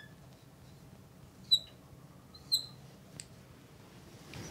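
Felt-tip marker squeaking on a glass lightboard as strokes are written: two short high squeaks about a second apart, then a faint tick near the end.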